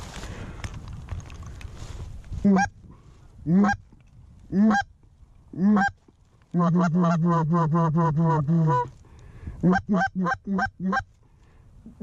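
Canada goose honking: after about two seconds of rustling noise, four single honks about a second apart, then a fast run of short clucking notes at about seven a second, and a few more short honks near the end.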